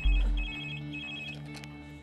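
Mobile phone ringtone: a high electronic trill sounding in three short bursts about half a second apart, over a low background music score that opens with a deep bass hit.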